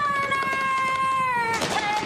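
A woman singing one long, high held note that sags slightly in pitch, then a lower note near the end, as a showy vocal fanfare.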